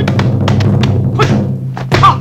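Film soundtrack: a loud held low musical note under a quick run of short, sharp hits and swishes, the dubbed sound effects of kung fu moves and a kick.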